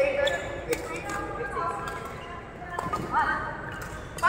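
Badminton rally: rackets strike the shuttlecock with sharp pops in the first second, and court shoes squeak on the court mat about three seconds in.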